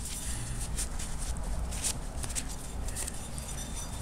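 Shop rag wiping and rubbing greasy small steel parts by hand, an irregular soft rustling and scrubbing, over a low steady hum.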